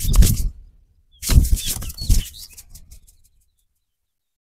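Hands rubbing and scrunching a man's hair in quick, rough strokes during a vigorous head massage. The strokes pause briefly, start again, fade, and stop abruptly a little after three seconds in.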